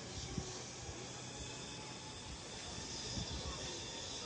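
Faint, steady outdoor background noise, an even hiss with no distinct event.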